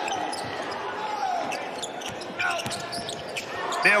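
Basketball being dribbled on a hardwood court, heard as scattered short thuds over a steady background of arena noise.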